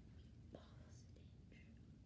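Near silence: faint room tone with a small click about halfway through.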